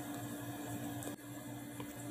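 Room tone: a steady low electrical hum over faint hiss, with a soft click about a second in.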